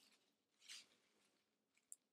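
Near silence, with one faint brief rustle a little under a second in: hands handling a coffee-filter paper flower and tape.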